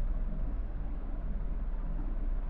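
Steady low electrical hum with an even hiss of background noise; no distinct events.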